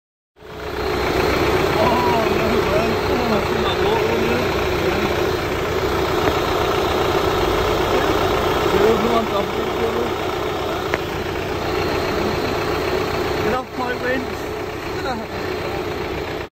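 A vehicle engine idling with a steady hum, with indistinct voices over it.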